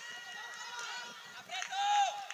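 Several high-pitched voices shouting and calling out over one another at a youth football match. A louder, held call comes near the end.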